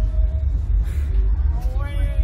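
Heavy steady low rumble on the ride-mounted camera's microphone while the riders wait for launch, with a rider's held hum stopping about half a second in and a short rising whimper near the end.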